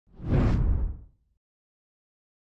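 A deep whoosh sound effect for an animated logo reveal: it swells in quickly, holds for about half a second and dies away before the second is out.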